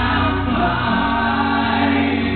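Live acoustic rock band performance: held sung vocal notes over acoustic guitar.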